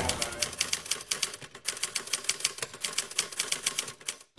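Typewriter keys clacking in a rapid run of sharp strokes, with a short break about a second and a half in.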